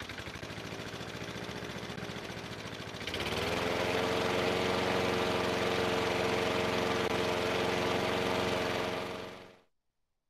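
Lawn mower engine running at a pulsing idle, then speeding up about three seconds in to a louder, steady run, and cutting off shortly before the end.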